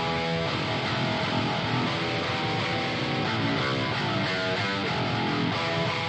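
Clean-toned electric guitar track playing back in a mix: a steady run of plucked chords and single notes.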